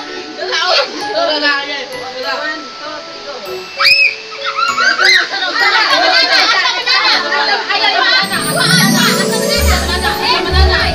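A group of excited children and adults chattering and calling out over each other, with background music underneath; a short rising squeal about four seconds in, and a heavier music beat coming in near the end.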